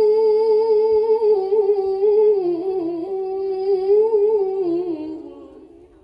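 A woman's amplified voice reciting the Quran in a long melodic line, one drawn-out ornamented note that wavers and steps down in pitch, tapering off about five seconds in.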